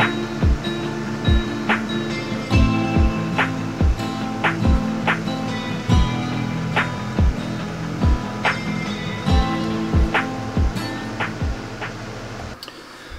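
Background music with a steady beat.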